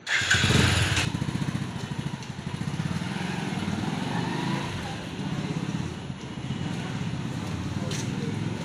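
Small motorcycle engine running at low speed close by: a steady, rapid low putter, loudest in the first second.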